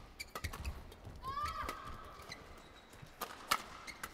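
Badminton rally: rackets strike the shuttlecock with sharp cracks at irregular intervals. About a second in there is a short rising shout of "ah!", held for about a second. A hard hit near the end is the loudest sound.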